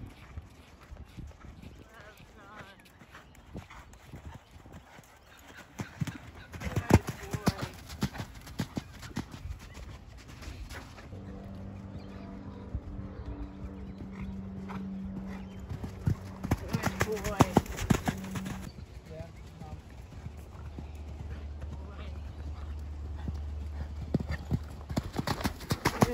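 Hoofbeats of a Thoroughbred horse cantering on a sand arena, loudest as the horse passes close twice, about seven and seventeen seconds in. A steady low hum runs under the middle stretch.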